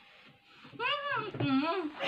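Muffled, high-pitched humming vocal sounds from a person with a mouth stuffed full of marshmallows: two short rising-and-falling calls about a second in.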